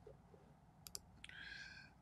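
Near silence broken by a quick double click a little under a second in: a computer mouse button pressed and released to advance a presentation slide. A faint hiss follows.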